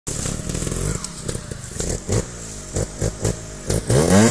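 Trials motorcycle engine running and revving in short throttle blips, with a rising rev near the end.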